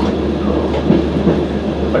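VR Dm7 'Lättähattu' diesel railbus running along the track, heard from inside its cab: a steady low engine drone mixed with wheel-on-rail noise.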